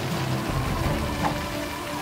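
A steady rain sound effect for a cartoon storm, mixed with background music.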